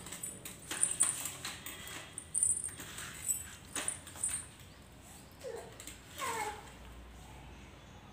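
Plastic baby walker rattling and clicking as its wheels roll over a concrete floor, with light high-pitched jingles, then a baby gives two short whimpers that fall in pitch, about five and a half and six seconds in.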